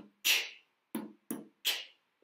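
A woman imitating a drum kit with her voice, beatbox style: two low 'boom' beats followed by a hissing cymbal-like 'tss', in an even rhythm, heard twice.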